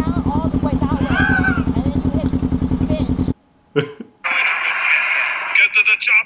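Motorcycle engine idling with a fast, even pulse under faint conversation; it cuts out abruptly a little over three seconds in. Brief talk and a steady hiss with a high tone follow.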